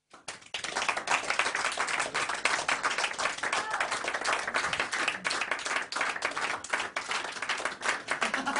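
Audience applauding after a live song, a dense steady clapping that starts suddenly right at the beginning and keeps up evenly.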